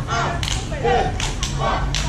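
Children's high voices calling out, cut by four or five sharp cracks spread across the two seconds, over a steady low rumble.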